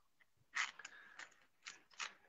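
A few faint, scattered clicks and rustles of handling as a small book is picked up and brought toward the camera.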